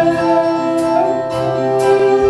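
Live acoustic band music: an acoustic guitar strummed over held keyboard chords, in a short gap between sung lines.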